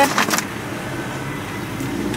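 Car engine idling, heard from inside the cabin as a steady hum, with a brief crinkle of a paper takeaway bag being handled at the start.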